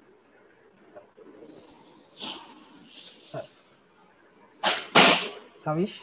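A man laughing close to the microphone: two loud breathy bursts of laughter near the end, then a short voiced "uh".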